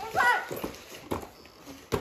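Gift wrapping paper being grabbed and torn off a box, crackling in short irregular rips with a sharp rip just before the end. A brief child's vocal sound comes about a quarter second in.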